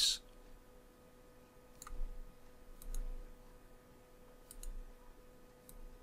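A few faint computer mouse clicks, some in quick pairs, spaced out over several seconds, over a low steady electrical hum.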